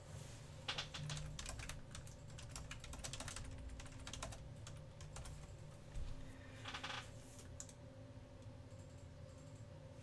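Computer keyboard typing: a quick run of keystrokes over the first few seconds, then a short clatter of keys about seven seconds in, with a steady low electrical hum underneath.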